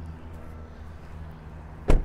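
A car door slams shut once near the end, a single heavy thump: the front door of a 2019 Toyota 4Runner closing.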